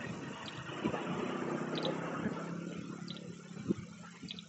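A motor vehicle's engine running close by, building about a second in, holding steady, then fading away near the end as it passes.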